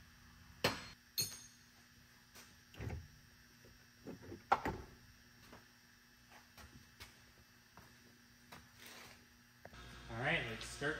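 Faint, scattered clicks and knocks of hand work on parts and tools in a car's engine bay, with a cluster of them a few seconds in, over a low steady hum.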